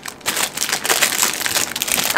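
Clear plastic packaging bag crinkling as it is handled, a rapid run of crackles starting about a quarter second in.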